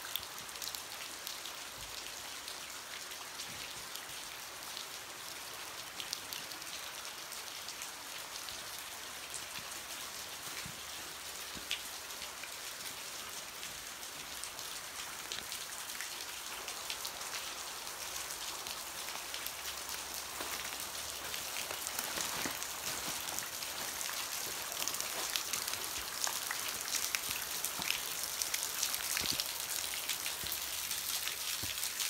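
Steady patter and splash of falling and running water, with many fine drip-like ticks, growing louder in the last several seconds as water dripping off a rock overhang comes close.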